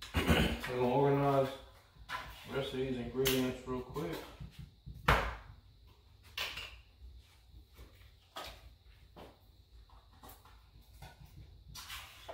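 A person's voice making wordless sounds for about the first four seconds, then scattered light knocks and taps of kitchen work as a crust is pressed into a pan.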